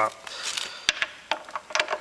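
A few separate sharp metal clicks as a socket is fitted onto a lawnmower's wheel bolt.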